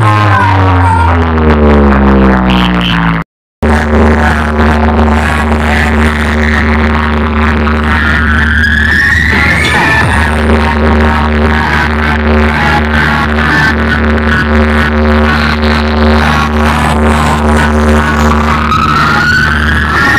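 Loud electronic DJ music played through a stacked speaker-box rig, with heavy sustained bass. A falling pitch sweep opens it, the sound cuts out for a moment about three seconds in, and rising sweeps build near the middle and at the end.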